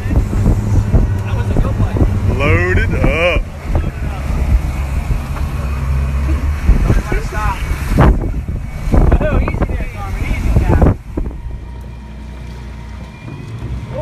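Mercury outboard motor running with a steady low hum under heavy wind noise on the microphone, with a few brief shouted voices. The sound drops to a quieter hum about eleven seconds in.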